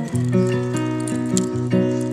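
Background music: a melody of held notes that steps from note to note.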